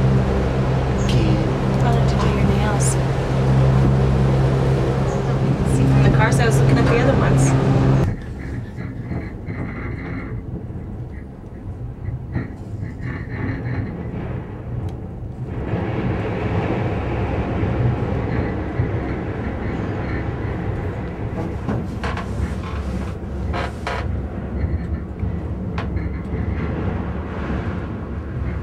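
Gondola lift machinery humming steadily at the station, heard from inside the cabin; the hum cuts off abruptly about eight seconds in as the cabin leaves onto the cable. After that comes a quieter, even rumble and rattle of the cabin riding the cable, with a few sharp clicks later on.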